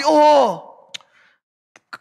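A man's voice drawing out one syllable with a falling pitch that fades in the first half second, then a pause holding only a faint breath and a couple of small clicks.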